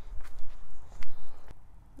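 A few footsteps on wooden path boards in the first second or so, the loudest just after one second, over a low rumble on the microphone.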